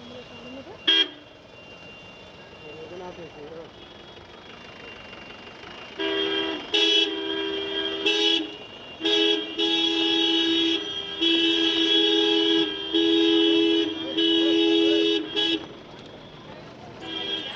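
Police jeep's two-tone horn: one short toot about a second in, then honked in about six long, loud blasts from about six seconds in until just before the end.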